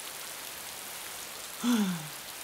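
Steady heavy rain, an even hiss of drops falling on the ground and into puddles. Near the end a boy lets out a short sighing "ah" that falls in pitch.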